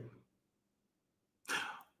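A pause in a man's speech: near silence, then a short, quick intake of breath about one and a half seconds in, just before he speaks again.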